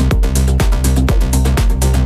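Electronic dance music from a progressive house DJ mix: a steady four-on-the-floor kick drum at about two beats a second, under a sustained bass line and synth chords.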